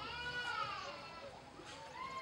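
A faint, distant drawn-out cry that rises and then falls in pitch over about a second, with a second, shorter cry starting near the end.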